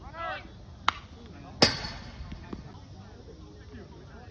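A short shout, a faint sharp click just under a second in, then the loudest sound: a sharp crack of a baseball impact with a brief ringing tail about a second and a half in, as a pitch reaches the plate.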